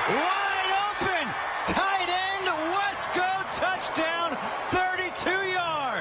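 A television play-by-play commentator calling a touchdown in a raised, excited voice, over steady stadium crowd noise.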